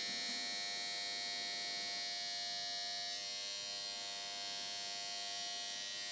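Quiz-show buzzer stuck on, sounding one continuous steady electronic buzz. The host takes it to be held down by tape on the button.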